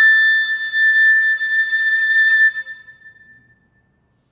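Solo concert flute holding a long, high closing note after a quick run of notes. The note stops about two and a half seconds in and then dies away in the church's reverberation.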